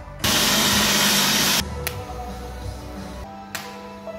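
A loud, even hiss that starts about a quarter second in and cuts off abruptly after about a second and a half, followed by background music with sustained notes and a couple of sharp clicks.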